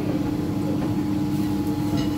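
Steady background noise of a working kitchen: a constant low hum with a rushing noise over it, from several gas burners lit under frying pans.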